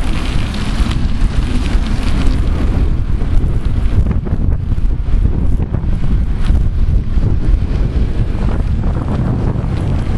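Wind buffeting the microphone of a bicycle-mounted camera while riding: a loud, steady, low rumbling noise.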